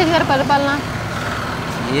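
Road traffic noise: a steady rush of passing vehicles, heard plainly in a pause between a man's words about a second in.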